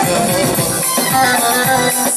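Live Turkish folk dance music, instrumental at this moment: a bağlama saz and an electronic keyboard playing over a drum beat of about four low strokes a second.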